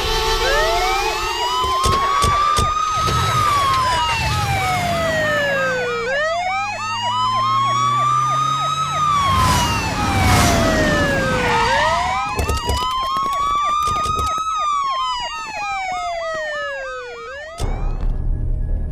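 Sirens of a vehicle convoy: a slow wail climbing and falling about every six seconds, three times, over a faster warbling siren tone. They cut off shortly before the end.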